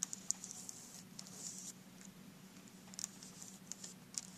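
Faint scratching of a red pencil tip on paper as a green plastic compass is swung around to draw a circle, with a few light clicks from the plastic compass.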